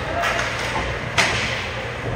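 Ice hockey play along the rink boards: one sharp knock against the boards about a second in, over the steady din of the rink.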